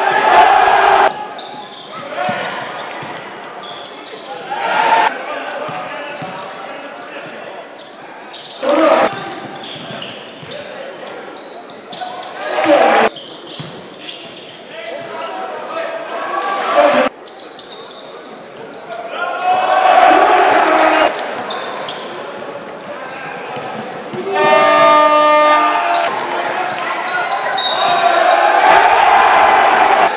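Game sound in a basketball gym: a ball bouncing on the hardwood and voices from players and crowd, with loud surges and abrupt jumps where plays are cut together. About 25 seconds in, a buzzer-like horn sounds for about a second.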